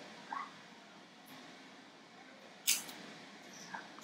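Mostly quiet room with a few faint mouth and breath sounds from a woman who has just swallowed a bitter wellness shot: a brief squeaky sound near the start and a short sharp hiss of breath about two-thirds in.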